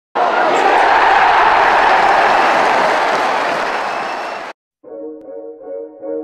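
Football stadium crowd roaring for about four seconds, easing slightly before it cuts off abruptly. A moment later, sustained string music begins.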